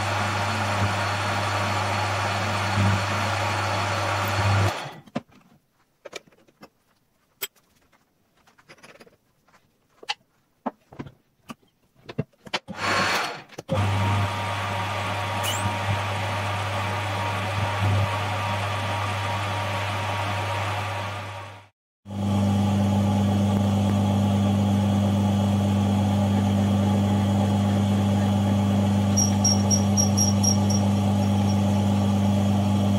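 Metal lathe running while a drill bit in the tailstock chuck bores into a spinning stainless steel cylinder-liner blank. Its steady hum stops about five seconds in, leaving a near-quiet stretch with scattered small clicks and taps. It runs again from about 14 seconds and, after a brief drop-out around 22 seconds, carries on at a different pitch, with a short series of high squeaks near the end.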